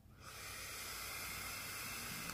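A long, steady drag on a box-mod vape: air hissing through the atomizer as it is drawn in, starting about a quarter second in.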